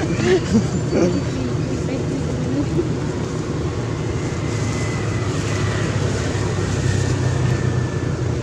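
Steady low rumble of background noise, with brief voice sounds in the first second.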